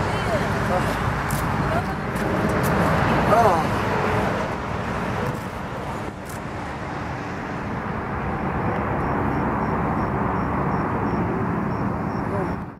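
Wind rumbling on the microphone with road traffic noise by a highway, and laughing voices in the first few seconds.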